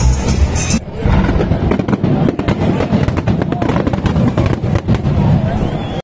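Music and crowd noise, then, about a second in, a string of fireworks bangs and crackles going off in rapid succession.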